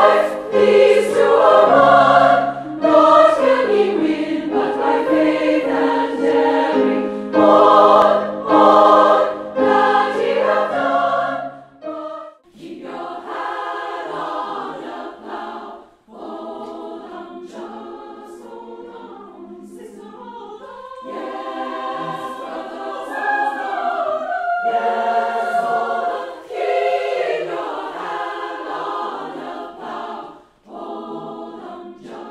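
A treble choir of women's voices singing in harmony: full, loud chords for about the first twelve seconds, then, after a brief break, a softer passage.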